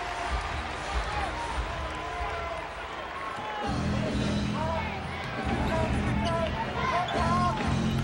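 Basketball game sound on the court: a ball being dribbled and many short squeaks, typical of sneakers on the hardwood floor. About halfway through, arena music with a steady bass beat comes in.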